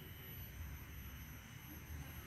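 Quiet background with no distinct event: a faint steady hiss over a low rumble.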